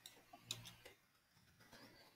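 Near silence with a few faint clicks from a computer keyboard and mouse, the loudest about half a second in.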